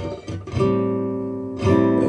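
Taylor acoustic guitar being strummed: a few quick strokes, then a chord struck about half a second in that rings and fades, and another strum near the end.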